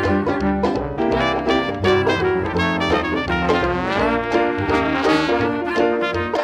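Traditional jazz band playing a blues, with trumpet and trombone leading over upright bass and rhythm section. About four seconds in, a horn line slides in pitch.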